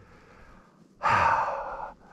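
A man's breathy sigh: one long exhale of about a second, starting about a second in.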